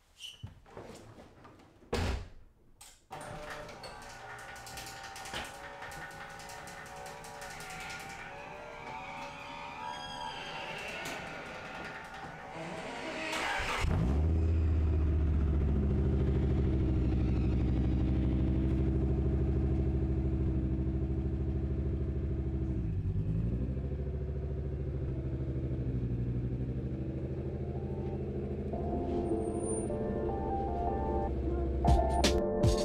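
A car door shuts, and about a second later the Acura Vigor's five-cylinder engine starts and runs steadily. About fourteen seconds in, much louder music with a steady bass comes in over it.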